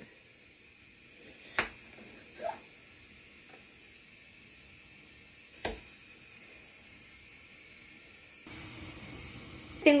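Two sharp clicks, a few seconds apart, as a metal apple corer is pushed through raw pumpkin slices onto a plate. Near the end this gives way to the steady hiss of a pot of water at a rolling boil.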